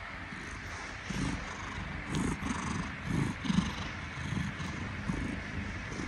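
Domestic cat purring right against the microphone, a low rumble that swells in pulses about two a second from about a second in, with faint rustling of bedding.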